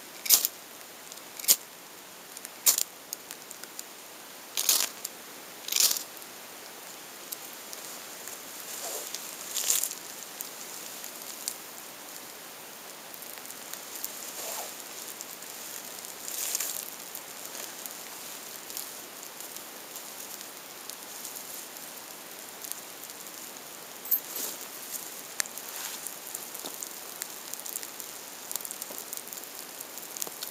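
Five sharp snaps or strikes in the first six seconds, then a small campfire just getting going in light rain: steady rain hiss with scattered small crackles and pops.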